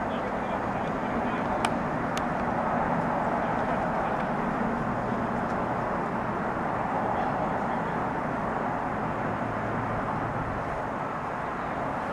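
Steady outdoor background noise with faint far-off voices, and a single sharp click about one and a half seconds in.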